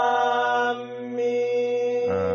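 A man intoning Qur'anic Arabic, the opening letters of a surah, drawn out in one long held note at a steady pitch that turns softer a little under a second in.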